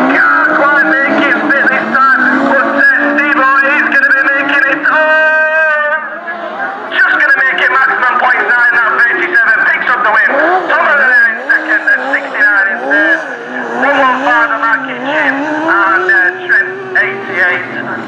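Autograss race cars' engines revving hard, their pitch rising and falling with gear changes as the pack races round a dirt track. A steady, high engine note stands out for about a second around five seconds in.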